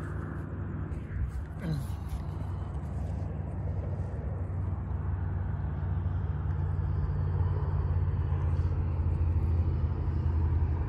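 Gas mini bike's small single-cylinder engine idling steadily while the bike is parked.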